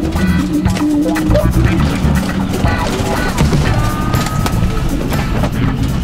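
Inside a travel trailer being towed: a loud, constant rumble with dense rattling, knocking and banging as the cabinets, fittings and loose contents bounce on the road. Music plays over it.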